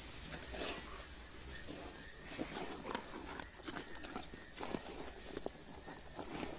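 A steady high-pitched chorus of night insects, with scattered short crackles and rustles from spotted hyenas feeding on a zebra carcass in the grass.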